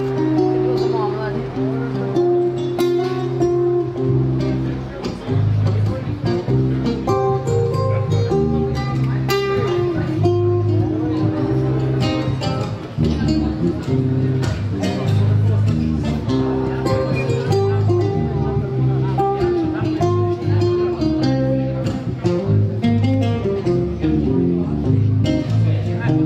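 Live acoustic guitar and electric bass guitar playing an instrumental passage together, with the bass moving between low notes under the picked and strummed guitar.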